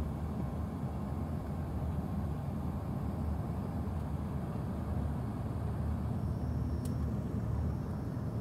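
Steady low rumble of an airliner cabin in flight on approach: engine and airflow noise heard from inside the cabin. A faint short click comes near the end.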